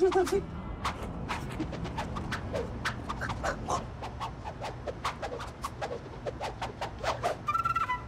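A rapid, irregular run of sharp claps and clicks, a few a second, made by hand close to a man's head to try to make him flinch. There is a short shout at the start and a brief high squeaky tone near the end.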